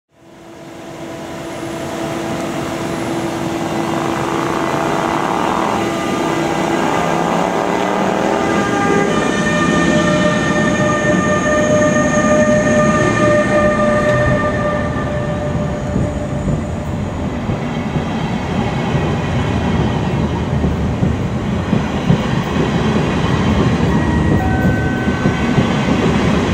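NS class 186 (Bombardier TRAXX) electric locomotive pulling away with an Intercity Direct train. Its electric drive whines in several tones that slowly rise in pitch as it gathers speed, over the growing rumble of wheels on the rails as the coaches roll past.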